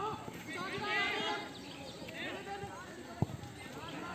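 Footballers shouting and calling to each other across an open pitch, voices rising to a high shout about a second in. A single sharp thump a little after three seconds in, a football being kicked.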